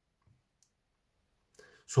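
Near silence with two faint, short clicks in the first second, then a man's voice begins just before the end.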